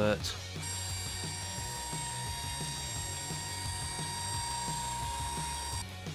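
Fast-forward sound effect: a steady mechanical whirr with a high whine, starting about half a second in and cutting off just before the end, over background music.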